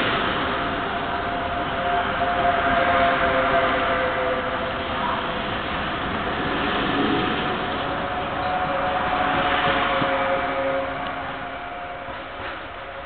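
Double-deck regional train running past along a platform: a steady rolling noise of wheels on rail with a sustained high whine held over it.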